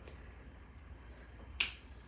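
A single short, sharp snap about one and a half seconds in, over a low steady hum, as hands press a glued paper strip flat onto a cardstock card.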